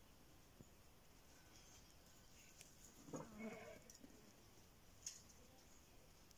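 A cat meowing once, a short call of under a second, about halfway through; otherwise near silence, with a faint click near the end.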